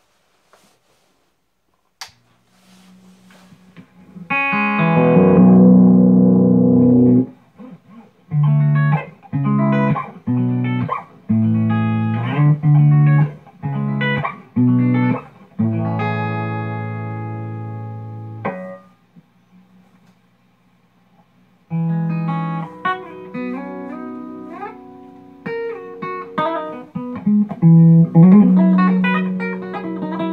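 Carvin DC600 electric guitar tuned to drop B, its Seymour Duncan Nuclear Winter bridge humbucker (an Alnico 8 Black Winter) played through a Mesa Boogie F30 on its clean tone. After a few quiet seconds with one click, chords ring out one after another with short breaks, the last left sounding for a couple of seconds; after a pause of about three seconds, picked arpeggiated notes follow.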